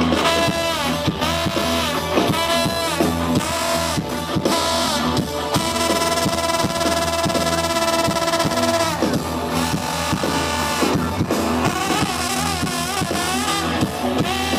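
Live rock band with a trombone soloing over electric guitar, the trombone bending and sliding between notes and holding one long note in the middle.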